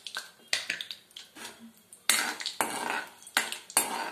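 Steel spoon clicking and knocking against a kadai while stirring dals in hot oil for a tempering, with a faint sizzle underneath. The knocks come as a series of sharp strokes, sparser at first and louder from about two seconds in.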